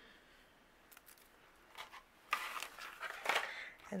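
Hands handling a paper card and crafting supplies on a cutting mat. After about two seconds of near silence comes a short run of light scraping and rustling sounds, with a louder one near the end.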